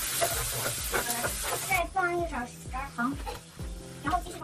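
Tomato and egg sizzling in an electric skillet as they are stir-fried with a spatula; the sizzle stops a little under two seconds in. A voice and background music with a steady beat run over it.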